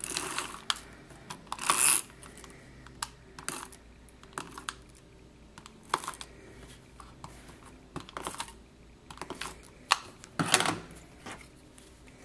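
Elmer's Dotto adhesive tape runner rolled over paper in short strokes: irregular clicks and brief rasping strokes, with a louder stroke near the end.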